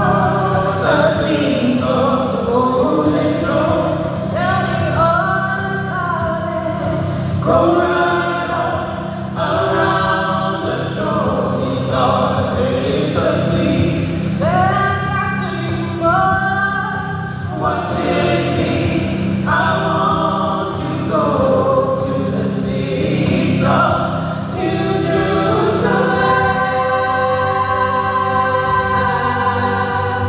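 A small gospel praise team of mixed male and female voices singing together in harmony into microphones, amplified through PA speakers.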